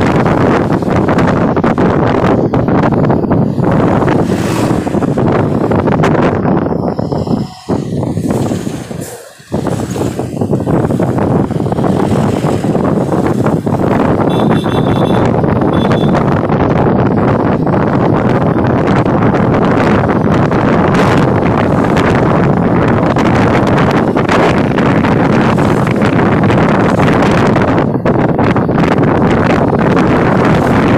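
Wind rushing over the microphone with road and engine noise from riding along in an open vehicle, cutting out briefly twice about eight and nine and a half seconds in. A brief high tone sounds about fifteen seconds in.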